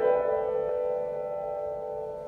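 Grand piano chord struck softly at the start and left to ring, its notes slowly dying away.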